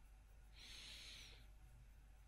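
Near silence: room tone, with one faint soft hiss about half a second in that lasts just under a second.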